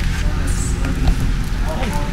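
Faint, indistinct talk over a steady low rumble, with a few light ticks.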